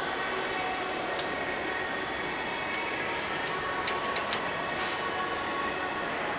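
A steady machine-like hum with a few sharp light clicks about three and a half to four and a half seconds in.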